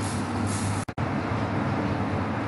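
Steady background hiss with a low hum, the noise floor of the recording, broken by a brief drop to silence just under a second in.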